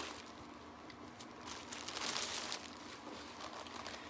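Clear plastic bag crinkling and rustling as a helmet is unwrapped from it, loudest about two seconds in.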